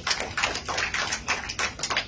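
Audience applauding: a dense, irregular run of hand claps.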